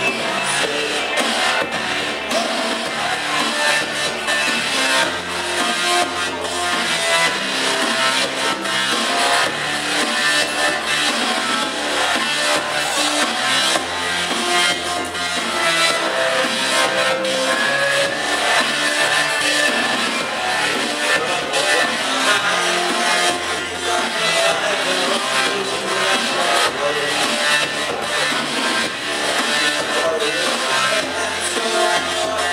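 A rock band playing live, with a drum kit keeping a steady beat under keyboards and held bass notes.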